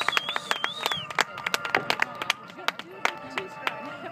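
Spectators applauding with scattered, irregular hand claps. A wavering high whistle sounds through the first second, over background voices and music.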